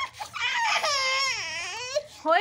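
Baby crying: one long wail of about a second and a half, its pitch sagging and rising again near the end, in protest at being lifted up out of his bath water.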